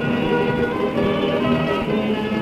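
A balalaika orchestra playing an instrumental passage of plucked, tremolo strings, heard from an old 78 rpm shellac record with the narrow, muffled sound of an early recording.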